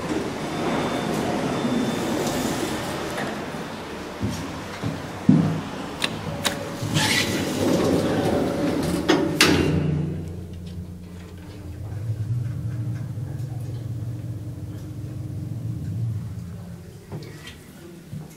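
Passenger lift: a few knocks and sliding-door noise, then the doors shut about halfway through and the outside noise cuts off. After that the lift car travels down with a low steady hum that swells and eases.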